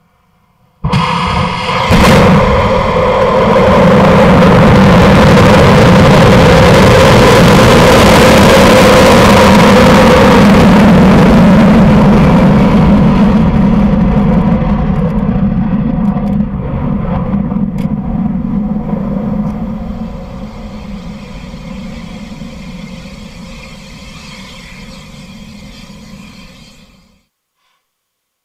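Delta II rocket lifting off, its RS-27A main engine and solid rocket boosters heard close to the pad. The noise hits suddenly about a second in with a sharp crack about a second later, holds at full loudness for about ten seconds, then fades steadily as the rocket climbs away.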